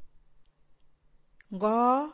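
A quiet pause with a few faint clicks, then, about a second and a half in, a voice speaking one drawn-out word, 'göö', Paicî for 'strength'.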